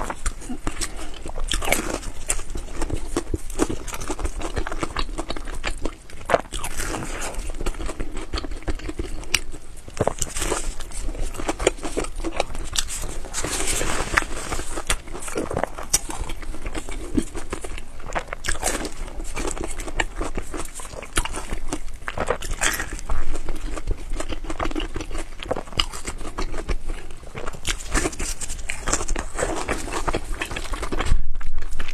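Close-miked chewing and biting as soft baked buns and sauced noodles are eaten, with many wet mouth clicks and smacks.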